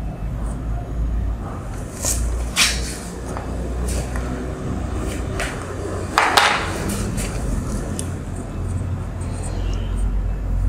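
A marker writing on a whiteboard: a few short, scratchy strokes, the longest a little after the middle, over a steady low room hum.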